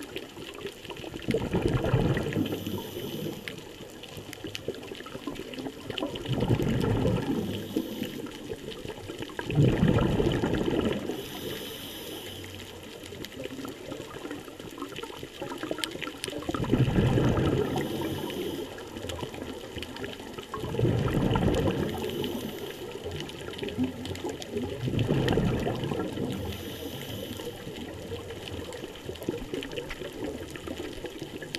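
Scuba regulator breathing heard underwater. Six gurgling bursts of exhaled bubbles come one every four to five seconds, with a faint high hiss of inhaling between them.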